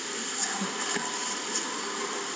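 A steady hiss with faint, indistinct sounds underneath it.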